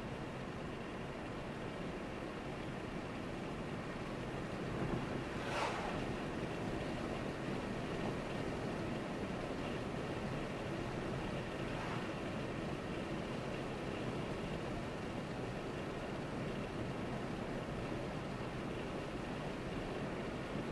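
Car driving on an open road, heard from inside the cabin: steady tyre and road noise with the engine's hum. A brief, sharper noise cuts through about five and a half seconds in.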